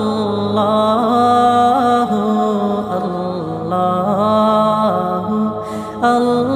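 Islamic naat sung by voices without instruments: a slow chanted melody in long held notes that slide in pitch, over a low steady vocal drone.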